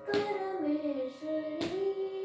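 A boy singing a Carnatic melody, his voice gliding between held notes. Two sharp hand slaps keep the tala, one just after the start and another near the end.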